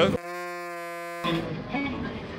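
A steady electronic buzzing tone, one pitch with many overtones, lasting about a second and cutting in and out abruptly, followed by the murmur of a busy hall.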